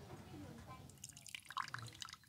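A thin stream of liquid poured from a small porcelain teapot into a glass, a faint trickle and splash that becomes clearer about halfway through.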